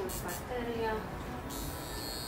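Handheld high-frequency scalp wand with a glass comb electrode switching on about one and a half seconds in, giving a steady high-pitched electrical buzz as it is brought to the wet hair.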